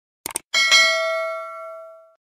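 Sound effect of a mouse double-click, followed by a bright bell chime that rings and slowly fades: the notification-bell sound of a subscribe-button animation.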